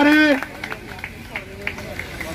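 A man's voice announcing, holding one long drawn-out syllable for the first half second, then fainter voices and small clicks for the rest.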